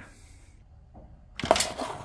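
Handling noise from a phone camera being set in place: a sharp click about a second and a half in, followed by a brief scratchy rustle.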